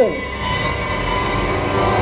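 Dramatic TV background score sting: a dense, sustained swell of many held tones at an even level.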